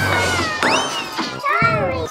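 Cat-like pitched cries over music: a held note at the start, one squeal rising and falling about half a second in, and a few short arched meow-like cries near the end.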